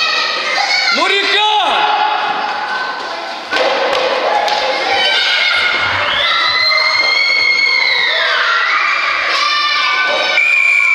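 Children shouting and cheering during a fast game, with one child's long high-pitched yell in the second half, and a thud about three and a half seconds in.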